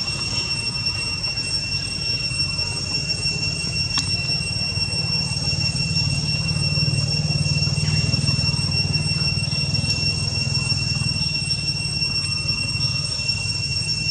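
Steady background drone: a low rumble with a constant high, thin whine over it, swelling slightly in the middle.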